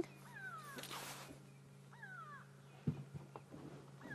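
Grey go-away-birds giving alarm calls: two drawn-out, falling calls, one near the start and one about two seconds in, faint over a low steady hum. The guide takes the calls to be aimed at a spotted hyena, which is unusual for this bird.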